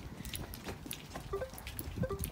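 Footsteps on a paved footpath while walking with a guide dog: a run of light, irregular taps.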